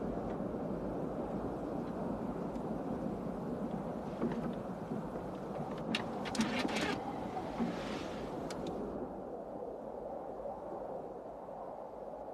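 Steady drone of a single-engine light aircraft heard from inside its cabin, with a few sharp clicks about six to seven seconds in.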